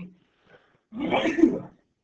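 A man coughs once, a short harsh burst about a second in.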